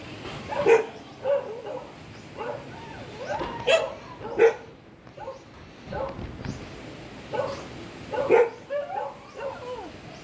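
A dog barking in short calls, a dozen or so at irregular intervals, loudest about a second in, around four seconds in and around eight seconds in.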